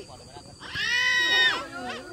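A man's long, high-pitched shout across the pitch, held for nearly a second starting a little before the middle, with a softer call just after it.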